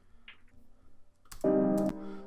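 A few faint clicks, then about a second and a half in a short, steady held synthesizer note from the beat being mixed in Ableton Live.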